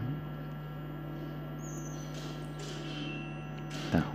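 Steady low mains hum under faint room noise, with one short sharp click near the end.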